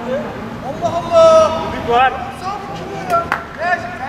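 Men's voices calling and shouting to one another on the pitch while a free kick is set up, with one short knock about three-quarters of the way through.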